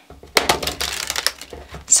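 Tarot card deck being riffle-shuffled: a rapid fluttering run of card edges flicking together, starting about a third of a second in and lasting just over a second.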